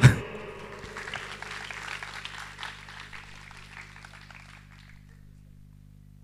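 Audience applauding, thinning out and fading away about five seconds in.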